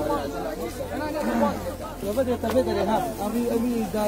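People talking, voices overlapping in casual chatter, with a low steady hum underneath.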